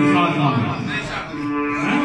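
A man singing Pothwari poetry into a microphone in long, drawn-out held notes, two of them, the second beginning just after a second in, with sitar accompaniment underneath.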